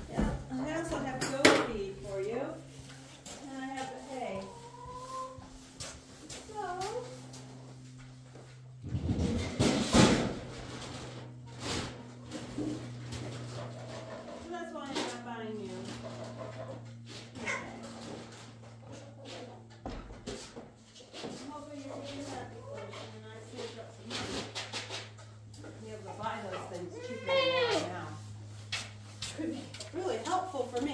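Goats bleating in short, wavering calls, on and off throughout, over a steady low hum. A loud noisy burst about nine to ten seconds in.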